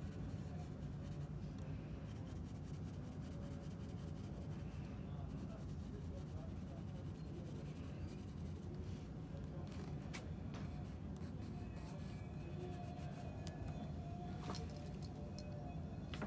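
Graphite pencil shading on sketchbook paper, soft scratching strokes over a steady low hum, with a few light clicks in the last few seconds.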